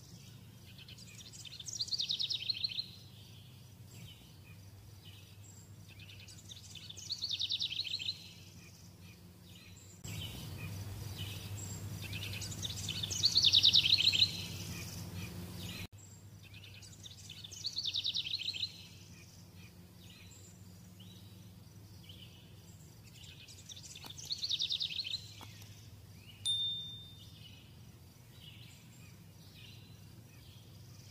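A bird singing a short, rapid trilled phrase, repeated five times about every five to six seconds, over a faint low hum. A brief high ping comes near the end.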